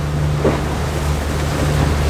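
Yamaha outboard engine running steadily with the boat under way, a constant low drone, heard from inside the boat's cabin along with the rush of water past the hull.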